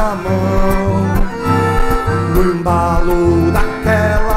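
Instrumental break in a lively vaneira, a gaúcho dance tune: an accordion plays the melody over strummed acoustic guitar and a steady, bouncing bass rhythm.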